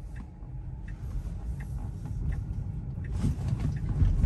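Low road and tyre noise inside the cabin of a Tesla electric car rolling slowly through town, with no engine sound. It grows a little louder near the end.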